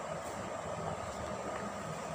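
Steady background hum and hiss with a faint constant tone, and no distinct event.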